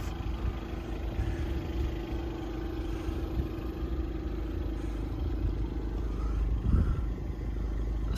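Steady low outdoor rumble with a constant hum that fades out about two thirds of the way through.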